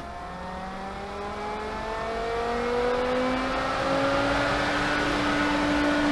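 1.5 horsepower Pentair variable-speed pool pump motor ramping up to its maximum speed of 3,450 RPM: a whine that rises steadily in pitch and grows louder over about five seconds, then levels off near the end.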